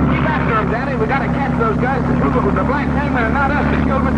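Speedboat engine running at speed, a steady low drone, with voices talking over it.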